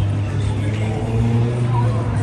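A motor vehicle's engine on the street, a steady low rumble that rises a little in pitch partway through, as if pulling away. Faint voices of people on the sidewalk underneath.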